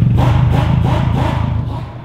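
Subaru WRX STI's turbocharged flat-four engine and exhaust running with a deep, steady note as the car pulls away at low speed, fading toward the end.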